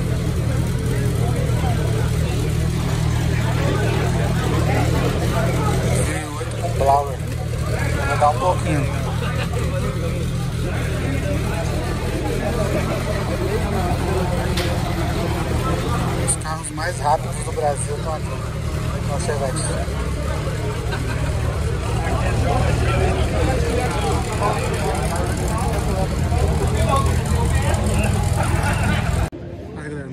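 An engine idling steadily with a low drone, under the chatter of people standing around; the drone stops suddenly just before the end.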